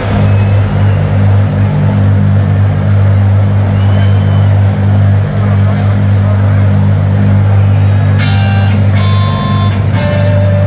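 Loud outro music from the stadium PA: a low droning note held steady, with crowd noise under it.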